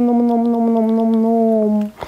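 A single long pitched note, held steady and sinking slightly in pitch before it stops just short of two seconds in.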